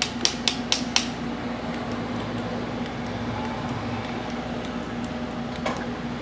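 A steady background machine hum with one constant tone, broken in the first second by a quick run of about five sharp, light clicks.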